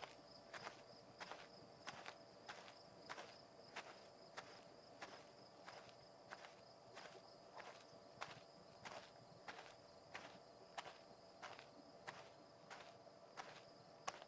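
Soft, evenly spaced footstep clicks of a cartoon kiwi walking, about three steps every two seconds, over a faint steady high-pitched hum.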